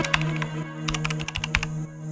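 Computer-keyboard typing sound effect: a quick, irregular run of keystroke clicks, thickest in the middle second, laid over background music with a low sustained tone.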